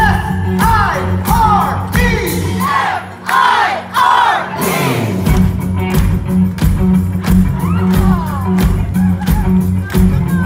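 Live rock band playing a steady bass-and-drum groove while the crowd shouts and whoops along. The bass and drums drop out for about two seconds midway, then the full band comes back in.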